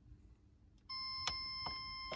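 Megger MFT1721 multifunction tester sounding a steady beep, starting about a second in, as an insulation resistance test between line and CPC on a ring circuit is locked on; two short clicks sound over it. The reading is over 999 megohms, so there is no longer a short between line and CPC.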